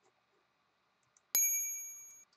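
A single bright electronic chime from the HegartyMaths quiz page, sounding once about a second and a half in and ringing out over most of a second: the signal that the typed answer has been marked correct.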